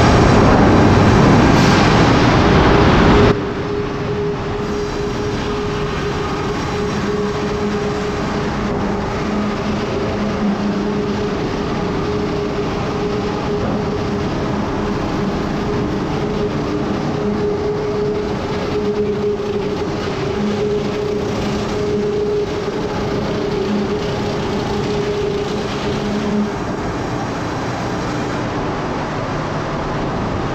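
Sawmill log-deck chain conveyors and debarker machinery running: a steady mechanical din with a constant hum and a lower drone that comes and goes. A louder rush of noise fills the first three seconds and cuts off abruptly.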